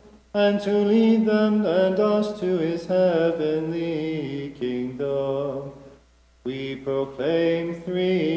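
A single male voice chanting a liturgical melody, with long held notes that slide from pitch to pitch. There is a short break for breath about six seconds in.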